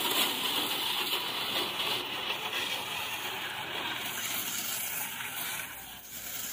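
Water jet from a 12 V portable car pressure washer's spray lance hissing steadily against a car's side panels and wheel, easing off slightly near the end.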